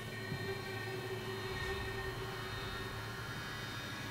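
A faint, steady drone made of a few held tones, one low and several high, with no beat and no voice.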